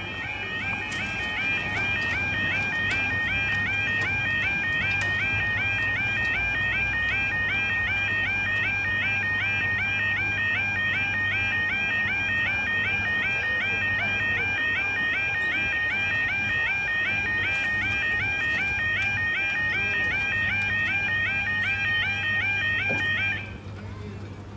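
Level crossing audible warning alarm: a steady, rapidly repeating warbling yelp tone that keeps sounding and then cuts off suddenly just before the end.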